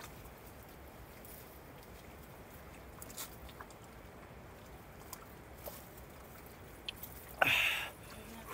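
A man drinking water from a steel jug, faint swallowing with a few small clicks, then a short breathy exhale near the end as he lowers the jug.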